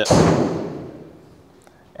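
Clip-on microphone brushed and knocked by clothing and arms crossing over the chest: a sudden thump and rustle that fades out over about a second.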